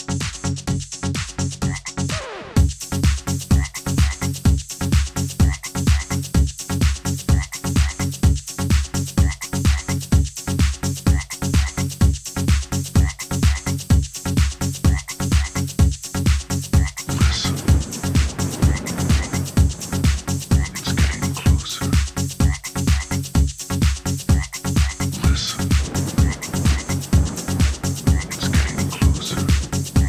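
Electronic dance track from a Belgian 12-inch record: a steady, loud kick-drum beat of about two beats a second, with repeated croaking frog-like sounds. A short sweep gives way to the full beat about two seconds in, and a denser layer joins about halfway through.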